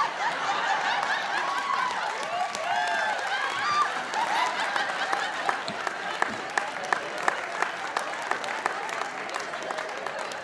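Live audience laughing, then breaking into scattered applause about four seconds in, with laughter carrying on under the claps.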